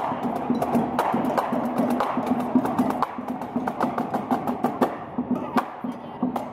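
Marching band playing as it marches past: quick, crisp snare-drum strokes and stick clicks over held low brass notes, a little quieter in the second half.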